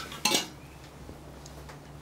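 A brief metallic clink as a heavy moulded power module with copper bus bar terminals is handled, followed by a steady low hum.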